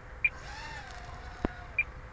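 Faint, distant whine of a small racing quadcopter's motors high overhead after a full-throttle vertical punch-out, the pitch sagging slightly as the throttle eases. Two brief high chirps, one near the start and one near the end, and a sharp click about a second and a half in.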